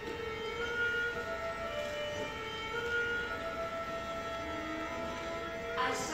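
Live musical-theatre orchestra playing held chords that change every second or two.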